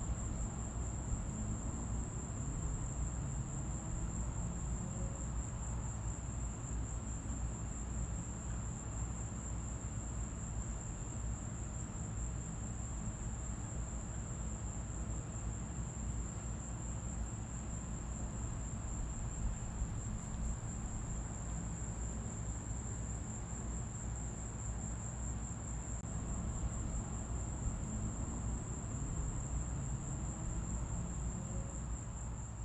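A steady, unbroken high-pitched insect trill, like summer crickets, over a low even rumble of outdoor background noise.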